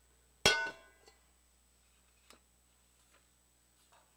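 Communion ware clinks once, sharply, about half a second in, with a short ringing tail, followed by a few faint ticks and clicks as it is handled.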